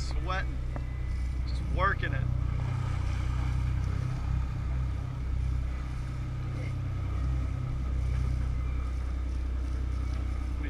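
A sport-fishing boat's engine running steadily, a low drone that holds through, with brief voices about two seconds in.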